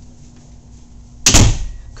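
A single loud thump of a cabin door about a second and a quarter in, over low room noise.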